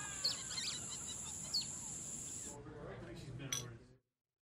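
Faint bird chirps, a few short rising calls, over a steady hiss and low voices. The sound cuts off to silence just before the end.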